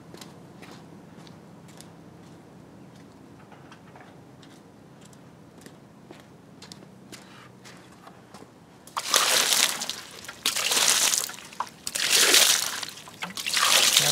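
Water splashing over a soapy alloy car wheel, rinsing off the dish-soap suds, in four loud bursts starting about nine seconds in. Before that only faint drips and ticks are heard.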